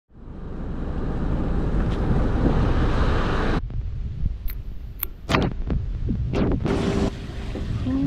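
Wind rushing over the microphone on a moving boat, which cuts off suddenly after about three and a half seconds. Then an aluminium beer can is cracked open by its pull tab: a few sharp clicks with a short fizzing hiss, the loudest crack about five seconds in, before the wind noise comes back.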